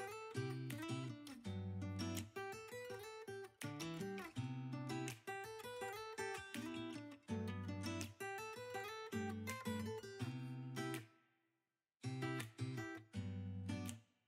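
Background music: strummed acoustic guitar. It cuts out suddenly for about a second, about eleven seconds in.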